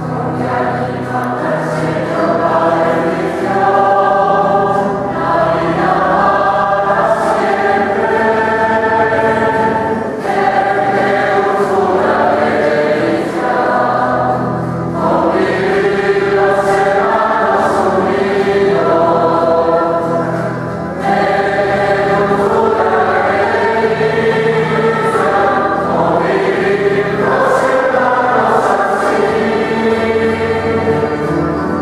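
A choir singing a sacred hymn during Mass, in long sustained phrases with brief breaks between them.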